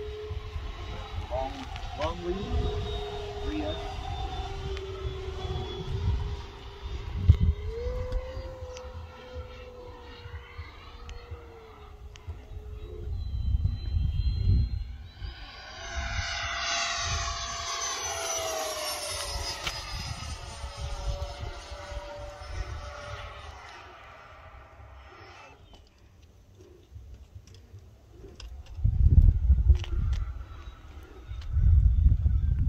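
Freewing Avanti S 80mm electric ducted-fan model jet flying, its fan whine steady at first. About 15 s in, the jet makes a fast low pass: the whine swells loud and falls in pitch as it goes by, then fades away, with gusty wind noise on the microphone throughout.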